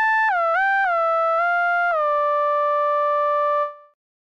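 Dead Duck DJX10 digital subtractive synthesizer playing a single-note lead line with a bright, buzzy tone. Several quick notes slide into one another in pitch, then a held note stops abruptly near the end.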